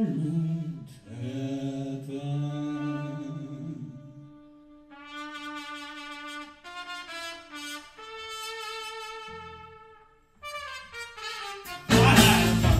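A male voice sings a low, wavering line for the first few seconds, then a solo trumpet plays slow, held notes that step from pitch to pitch in a quiet, sparse passage of a live band performance.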